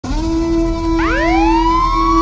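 Siren sound effect: over a steady low tone, a wail starts about a second in, rising in pitch and levelling off into a held note.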